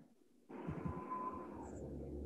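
A half-second drop to near silence, then quiet room tone: a steady low hum and hiss with a few faint soft knocks.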